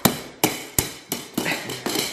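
A small plastic toy musical instrument is struck over and over with a toy wand: about seven quick, uneven taps in two seconds, each with a short ring.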